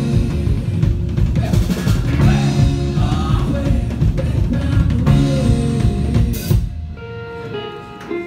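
Live rock band, two electric guitars with drum kit, playing loud and fast. About six and a half seconds in, the drums and band cut off together, leaving held guitar notes ringing: the song's final hit.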